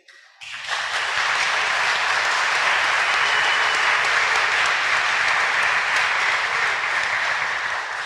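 Audience applauding, starting about half a second in and holding steady, easing a little near the end.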